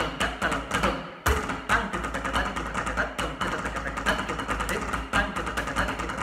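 Snare drum played with sticks in fast rudimental patterns, with a voice reciting konnakol rhythm syllables along with it. The playing breaks off for a moment about a second in and comes back in on a hard stroke.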